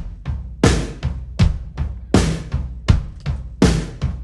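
Drum kit playing a steady beat: kick, snare and cymbal hits, with strong strokes about every three-quarters of a second and lighter hits between them.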